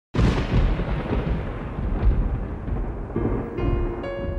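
A thunder sound effect from an electronic percussion pad: a sudden crash, then a long rumbling roll that slowly fades. Electric piano notes from a stage keyboard come in over it near the end.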